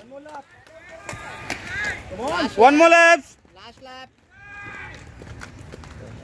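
Voices calling out at a roller-skating race. One loud, drawn-out shout comes about two seconds in and a fainter call about a second later, with quieter voices toward the end.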